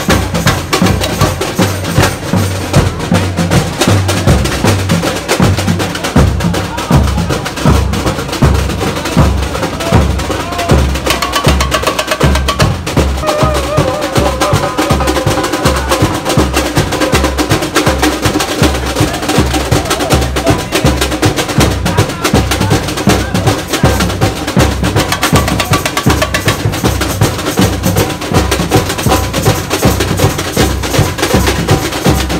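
Live street samba percussion group playing a steady, driving rhythm on surdo bass drums and snare-type drums, with sharp high strikes over the deep beats.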